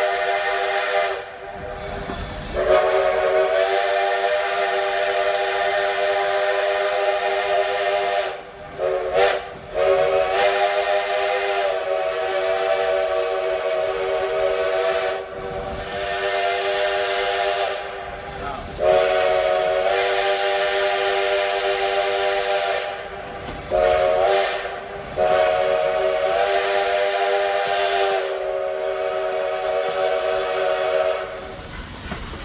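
Black Hills Central Railroad No. 110's chime steam whistle blowing in long blasts, each sliding up in pitch as it opens, in the long-long-short-long pattern of a grade-crossing signal, sounded twice over, for road crossings ahead. The train runs on underneath.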